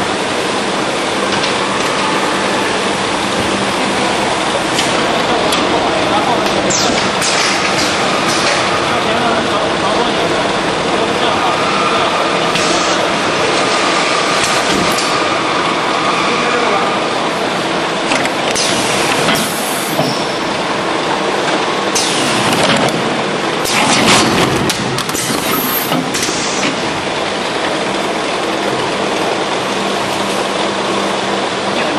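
Drop-type case packing machine running steadily, with a few sharp clunks about two-thirds of the way through as 5-litre oil jugs are dropped into cartons, over indistinct background voices.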